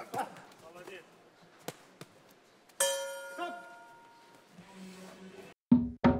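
Boxing ring bell struck once about three seconds in, ringing out and fading over about a second and a half: the signal for the end of the round. Before it a few faint knocks and shouts; music with drums comes in loudly near the end.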